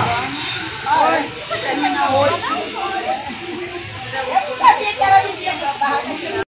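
People talking indistinctly, several voices in conversation, with a faint steady hiss underneath.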